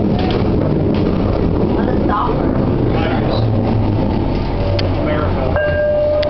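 Detroit People Mover car running on its elevated track, heard from inside the car: a loud, steady rumble of the moving car, with a steady high tone coming in near the end as it nears a station.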